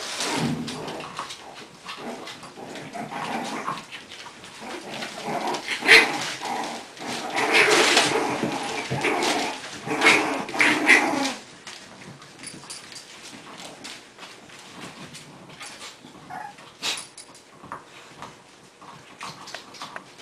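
English bulldog puppies vocalizing as they play-fight, busiest and loudest in the first half and quieter after about eleven seconds.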